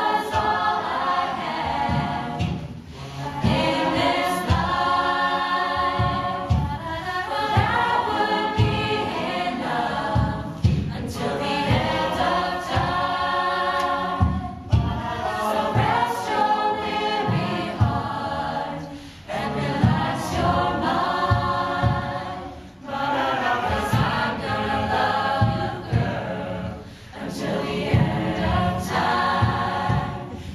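Mixed-voice a cappella group singing a slow pop song in close chordal harmony, in phrases of about four seconds with brief breaths between, over a steady low vocal-percussion beat.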